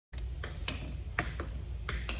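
A few sharp, irregular clicks of metal tap shoes on a wooden floor as the dancer settles her feet, over a low steady hum.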